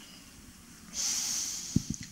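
A reciter's deep breath drawn in close to a handheld microphone, taken in a pause between Quran verses: a loud hissing intake starting about a second in and lasting most of a second. A couple of low thumps follow near the end.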